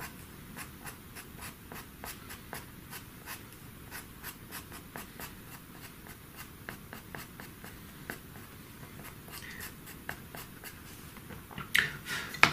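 White pastel pencil scratching on pastel paper in short, quick strokes, several a second, as fine hairs are flicked in.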